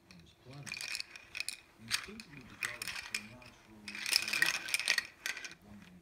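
A baby's plastic rattle-teether toy clattering and clicking in irregular bursts as it is shaken and handled, loudest about four seconds in.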